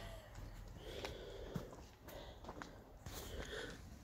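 Faint breathing close to the microphone, two soft breaths about two seconds apart, with light handling noise and a few small clicks.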